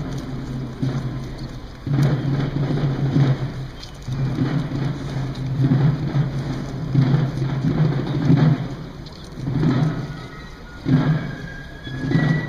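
Military snare drums playing rolls in phrases of a few seconds with short breaks between them. Near the end, high-pitched fifes begin faintly.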